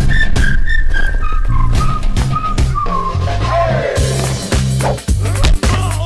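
Action-film background score: a high, whistle-like melody line stepping downward over a heavy pulsing bass beat that builds in about halfway through. Sharp hits and whooshes of fight sound effects are mixed in, thickest in the second half.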